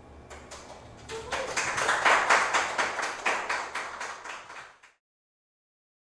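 A few people clapping by hand: it starts thinly, swells to a peak about two seconds in and dies away, stopping just before five seconds.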